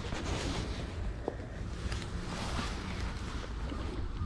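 Steady wind noise on a body-worn camera's microphone: a low rumbling hiss with no clear events.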